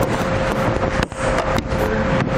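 Plastic tail light housing and wiring connectors handled and plugged together, with rustling and a few sharp clicks, over a steady background hum.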